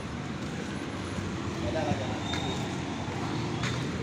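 Street ambience of road traffic: a steady rumble of engines with a low hum, and faint voices in the background about halfway through.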